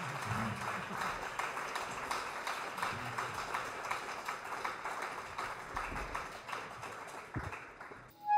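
Audience applause between pieces, thinning out near the end.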